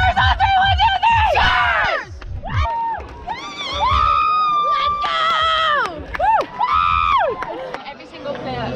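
Several young women shouting and cheering in high, excited yells, one yell held for over a second about four seconds in.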